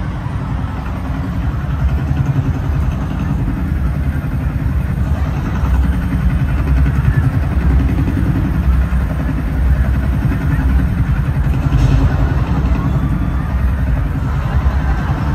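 Helicopter rotor and engine sound effect played loud through an arena's PA system: a dense, rapid low chopping that runs on steadily.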